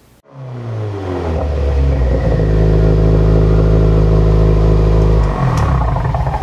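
A car engine sound: it comes in with its pitch sinking over the first second, then runs steadily at a low pitch, changing about five seconds in.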